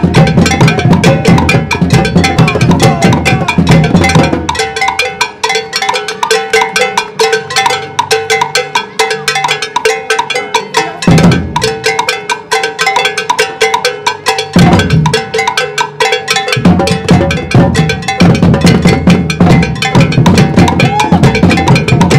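Batucada-style drum group playing a steady groove on metal surdo bass drums, djembes and smaller drums. About four seconds in the bass drums drop out, leaving the lighter drums playing alone with two single bass hits, and the full groove with the bass drums comes back about sixteen seconds in.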